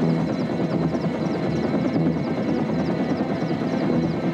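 Helicopter running steadily, its rotor beating in a quick regular rhythm.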